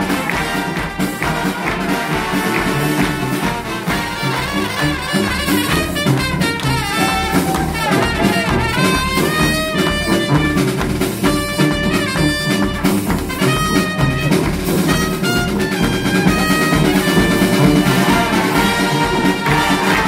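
Live brass band playing: trumpets and trombones carrying the tune over a sousaphone bass line and a steady beat.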